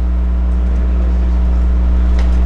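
A loud, steady low hum: one constant deep tone with fainter steady overtones above it, unchanging throughout, typical of electrical hum on the recording.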